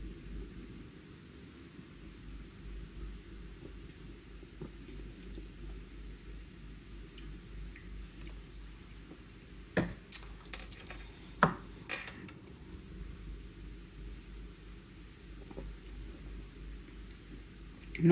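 Steady low room hum, with a few sharp plastic knocks and clicks about ten to twelve seconds in as a plastic shaker cup is handled.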